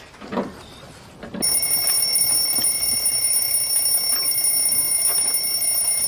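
Two soft ticks about a second apart, then, about a second and a half in, an alarm clock sound effect rings loudly and steadily as a countdown timer reaches zero.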